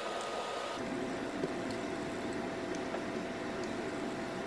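Steady background hum and hiss with a faint, thin whine, whose pitch drops abruptly about a second in. No distinct handling sounds stand out.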